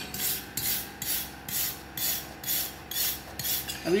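Hand-held steel wire brush scrubbing back and forth over the weld bead of an oxy-acetylene gas-welded butt-joint plate, a rasping stroke about twice a second. The joint is being cleaned after welding, before its bead and penetration are inspected.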